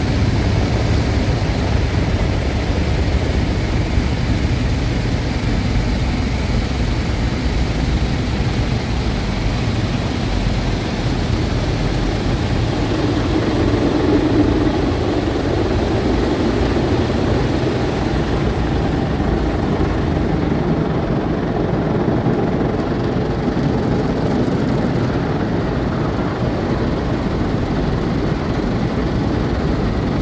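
Automatic car wash heard from inside the car's cabin: rotating brushes scrubbing over the windshield and water spraying on the body, a loud, steady rumble. The rumble is muffled by the closed car. The hiss eases off a little past the middle.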